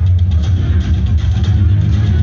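Loud band music through a stage PA system, with a heavy bass line and guitar.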